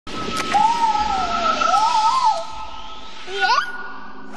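Animated-film soundtrack from an ice-tunnel slide scene: a high, wavering pitched sound sliding up and down for about two seconds over a steady high tone, then a few quick upward glides near the end.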